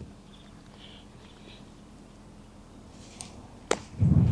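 A wedge pitch shot struck off hard, bare dirt: one sharp club impact near the end. It is a fat strike, the clubhead bouncing off the hard ground into the ball.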